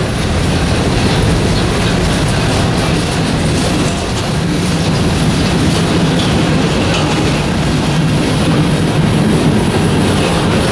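Freight cars of a passing freight train rolling by: a steady rumble of steel wheels on the rails.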